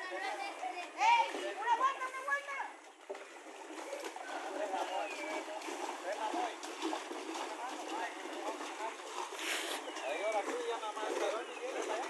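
Water splashing and sloshing around a small metal boat as it is poled and paddled through a creek, under ongoing chatter of children's and adults' voices.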